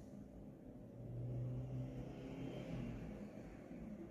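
A low engine hum, like a motor vehicle passing, swells about a second in and fades off toward the end.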